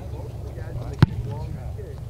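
A single sharp thud of a foot punting a football, about a second in, over a steady low rumble and faint distant voices.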